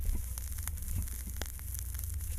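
Stylus in the lead-in groove of a 45 RPM record on a 1956 Webcor Studio phonograph: surface crackle and scattered clicks and pops over a steady low hum from the phonograph.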